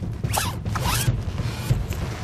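Fight-scene movement foley: two quick rasping swishes of leather clothing and body motion as one fighter leaps onto another's shoulders, about a third of a second in and again near one second, over a steady low rumble.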